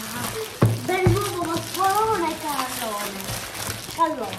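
Cellophane wrapping crinkling and crackling as it is pulled off a large hollow plastic egg, with one sharp knock about half a second in. A wordless, wavering voice sounds over it for about two seconds in the middle.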